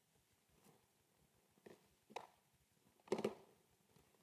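Near-quiet hall with a few short, soft noises, the loudest about three seconds in.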